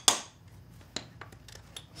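A farrier's hammer makes one sharp metallic clink with a short ring at a nailed horseshoe on a hoof, followed by a few faint ticks and taps.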